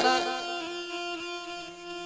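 Electronic keyboard holding a sustained string-like chord of several steady notes that slowly fade.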